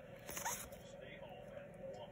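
Baseball cards sliding against each other as they are thumbed through by hand: a short faint swish about a third of a second in, then soft scraping and small clicks of card stock.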